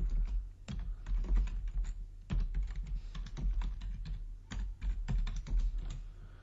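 Typing on a computer keyboard: a quick, irregular run of key clicks as a file name is typed.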